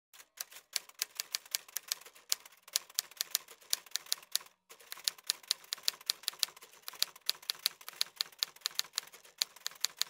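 Typewriter keys clacking in quick, uneven succession, several strikes a second, with one short break a little before halfway.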